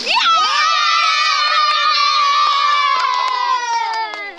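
Several children shouting and cheering together in one long held yell that slowly falls in pitch, with a few light taps underneath.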